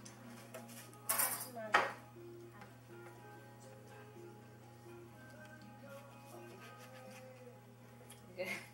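Tableware clatter: a short scrape about a second in, then a sharp clink of a knife or dish on a plate, over faint background music with a slow tune.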